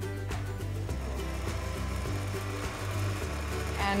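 Kenwood stand mixer motor running steadily, beating gelatine for marshmallow as hot sugar syrup is poured in, under background music.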